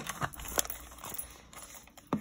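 A few light clicks and taps from a plastic sports water bottle and its lid being handled and set down, sharpest at the start and fading within about a second.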